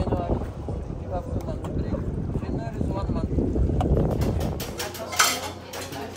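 Wind buffeting the microphone aboard a moving boat, a dense low rumble with faint voices under it. About five seconds in it gives way to plates clattering over a steady low hum inside the boat's cabin.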